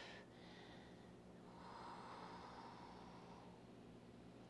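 Near silence with one faint, soft breath lasting about two seconds in the middle, over a faint steady room hum.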